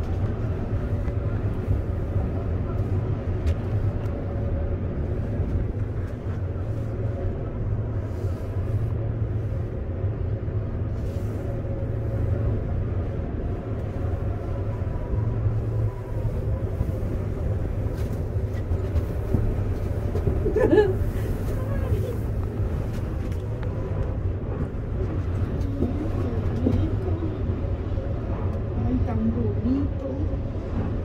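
Steady low rumble inside a moving gondola cable car cabin as it rides up the cable, with faint voices of other passengers now and then and a louder brief voice about two-thirds of the way through.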